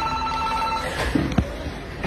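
A trilling electronic ring on two or three steady pitches for about the first second, then a sharp click.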